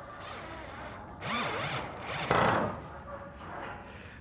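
Cordless drill driving a screw under heavy pressure into a pilot hole in old steel, its motor pitch rising and falling as it loads, with the loudest, harshest stretch a little past halfway.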